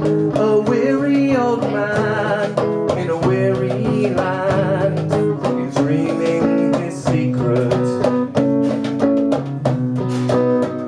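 Live acoustic guitar strummed in a steady rhythm under a singing voice with vibrato: a folk-style song.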